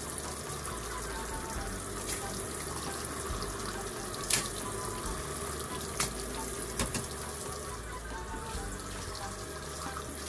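Top-loading washing machine filling: a steady spray of water pouring into the drum onto wet clothes, with a detergent cap held in the stream to rinse it out. A few light knocks sound over the water.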